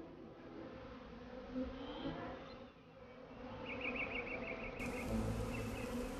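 Honeybees buzzing around beehives, a steady hum, with a brief run of high chirps about two-thirds of the way through.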